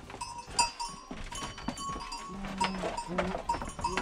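Goats moving about on a slatted wooden floor, their hooves knocking and clattering on the boards at irregular moments.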